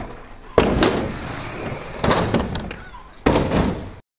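Inline skates on skatepark ramps: three hard knocks, about half a second, two seconds and three seconds in, each followed by the rolling noise of the wheels fading away.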